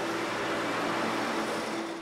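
Zamboni ice resurfacer running, a steady hiss-like machine noise that eases slightly near the end, with a low steady tone underneath.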